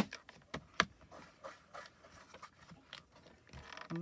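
A hinged stamp-positioning tool being handled while stamping onto card stock: a sharp click at the start, two more clicks under a second in, then scattered soft taps.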